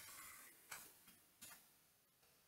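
A few faint computer keyboard key clicks while typing, two of them standing out about a second apart, over near silence.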